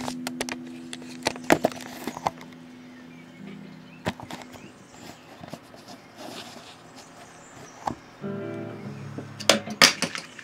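Electric guitar through an amplifier: a held note fades away over the first few seconds, then a new note or chord rings out about eight seconds in. Sharp knocks from handling are scattered through, with the loudest just before the end.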